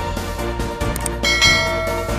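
Outro music with a steady low beat, and a bright bell chime about one and a half seconds in that rings out briefly: the sound effect for the notification bell in a subscribe animation.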